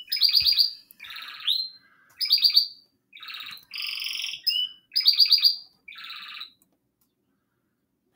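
A pet bird singing: a run of short, high chirps and trills, about eight phrases with brief gaps between them. It stops a little over six seconds in.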